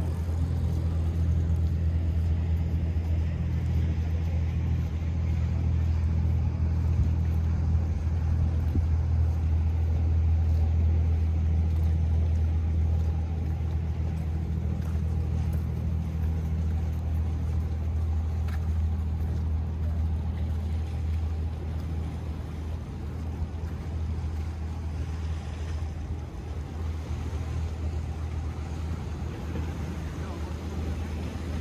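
Low, steady drone of a passing motorboat's engine, fading gradually through the second half as the boat moves away.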